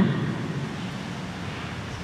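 A pause between words filled with steady, even background hiss of the room and broadcast audio; a man's drawn-out "eh?" trails off at the very start.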